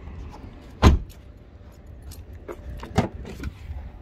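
A BMW 3 Series saloon's rear door shut with a heavy thump about a second in, then the boot lid released and opened with a second, lighter thump and clicks about three seconds in. Light rattling clicks run in between.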